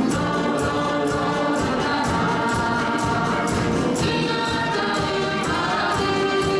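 A choir singing with a live instrumental ensemble, percussion keeping a steady beat.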